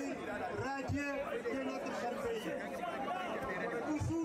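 A large outdoor crowd: many voices talking and calling out at once in a steady hubbub, with no single voice standing out.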